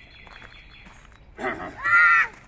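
A young child's short, high-pitched vocal cry near the end, rising then falling in pitch, over a quiet outdoor background.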